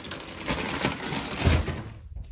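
Rustling and clattering from handling and moving a handheld camera, with many small knocks and one louder thump about one and a half seconds in.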